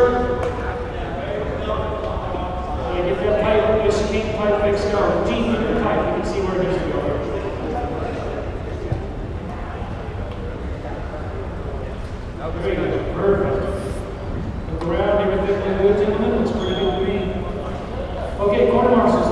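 Indistinct voices talking in a large echoing gym hall, over a steady low background din, with a few short clicks.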